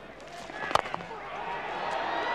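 A cricket bat strikes the ball once with a sharp crack about three quarters of a second in, over faint stadium crowd noise that slowly grows louder.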